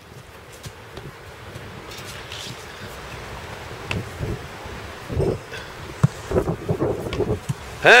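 A football punched away by a goalkeeper: short sharp knocks about four seconds in and again about six seconds in, over steady outdoor wind noise.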